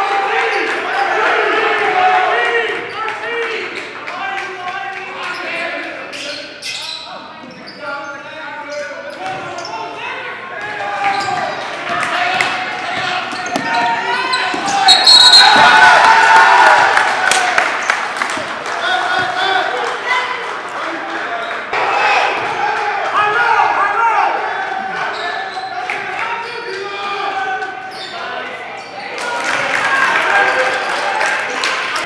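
A basketball bouncing on a hardwood gym court, with players' and spectators' voices calling out in the hall. The noise is loudest about halfway through.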